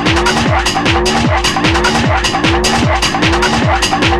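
Fast electronic dance music from a DJ set, free-party tekno style. A kick drum hits about three times a second, each beat with a short upward-gliding synth tone, over steady hi-hats.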